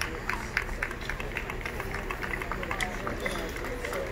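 Scattered hand claps from a small arena audience applauding, with people talking nearby.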